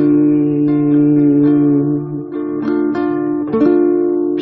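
Acoustic guitar strumming held chords, with a chord change and fresh strums about two and a half seconds in and again near the end.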